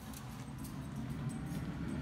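An old metal radon fan mounted on a hollowed-out 5-gallon bucket is switched on and spins up, its low hum building steadily louder as it starts pushing air up a duct.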